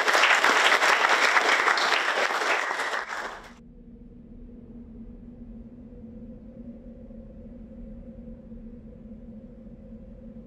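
Audience applauding, stopping abruptly about three and a half seconds in, followed by faint steady low tones.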